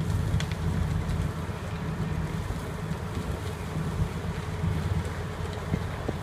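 Steady low drone of a fire engine's diesel engine running its pump, with wind buffeting the microphone.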